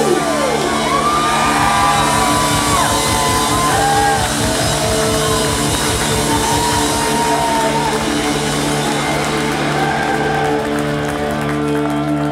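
Ska band with trumpet and trombone playing live in a hall, holding a long sustained chord while the crowd shouts and whoops over it. The deepest bass drops out near the end.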